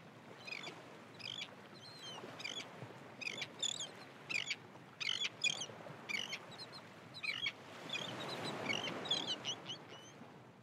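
Birds chirping in quick, repeated short calls over a steady low rushing background.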